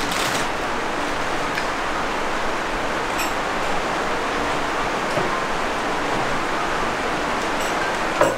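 A steady, even hiss with a few faint clicks.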